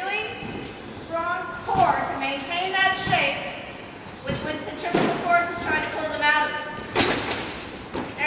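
Talking, broken by a few short dull thuds of gymnasts landing on gym mats. The sharpest thud comes about seven seconds in.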